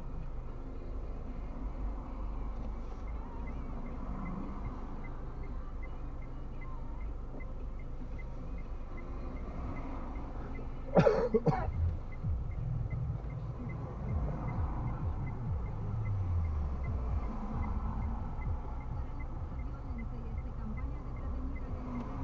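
Steady low hum inside a car idling in stopped traffic, with a faint regular ticking. About eleven seconds in, a person in the car coughs twice, briefly and loudly.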